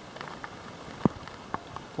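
Faint scattered ticks and crackles with one sharper knock about a second in: handling and movement noise from someone shifting about in an attic.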